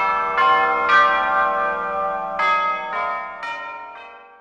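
Bells struck in a slow run of notes, each ringing on and overlapping the next, dying away near the end.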